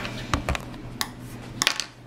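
A few short sharp clicks and knocks of small hard plastic Play-Doh tools and toys against a tabletop, about five in all, two in quick succession near the end.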